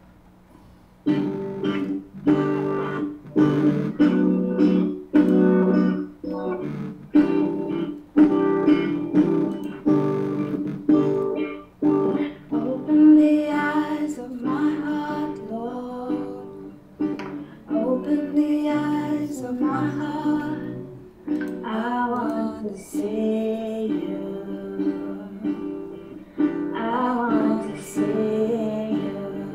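A recorded worship song: acoustic guitar strumming chords in a steady rhythm, starting about a second in, with a singing voice joining partway through.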